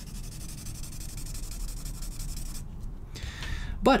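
Scratchy strokes of an oily white Prismacolor pencil being scribbled over red chalk-pencil marks on toned paper, stopping a little past halfway.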